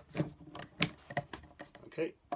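Hard plastic clicks and knocks as a Dyson V8 handheld vacuum and a plastic connector hose are handled and pushed together: about half a dozen separate sharp taps, with the vacuum not running.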